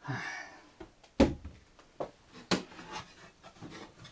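A heavy breath out, then about four sharp knocks and clacks of wood and a tool being handled and set down while cupboard doors are fitted. The loudest knock comes about a second in.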